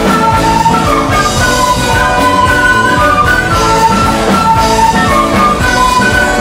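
Live Andean folk band playing loud dance music: a melody over a steady beat.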